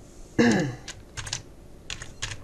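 Computer keyboard typing: a few separate keystrokes from about a second in, the first letters of a typed message. A short vocal sound comes just before them.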